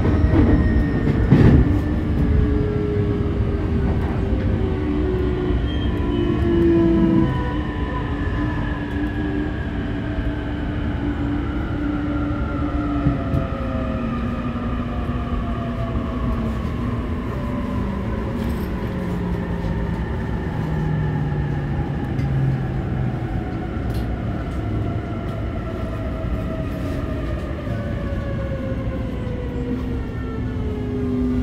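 JR East E531 series electric train heard from inside a motor car while braking to a stop. Several whining tones from the traction motors and inverter fall slowly in pitch as the train slows to a standstill, over a steady rumble of wheels on rail.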